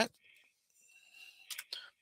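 A man's voice ends a spoken "all right" at the very start. Then comes a near-quiet pause with faint breathy mouth noise, about a second in, before he speaks again.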